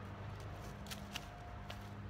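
Faint steady electric hum of a small SHURflo 4008 diaphragm water pump running to build pressure in the freshly closed garden hose, with a few light clicks and rustles of footsteps in dry leaves.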